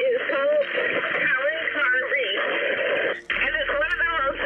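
A diver's voice coming through a full-face-mask underwater communication unit: thin, radio-like speech with everything above the upper midrange cut off, and a brief break about three seconds in.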